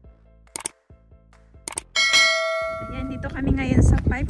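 Subscribe-button animation sound effect: two short clicks, then a bell-like notification ding about halfway through that rings on and fades. A voice starts near the end.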